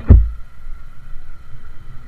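Low wind rumble on the microphone of a small motorcycle riding over cobblestones, with one loud low buffet of wind right at the start.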